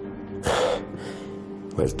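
A man's short, sharp audible breath, about half a second in, over a soft, steady background music drone; a man starts speaking near the end.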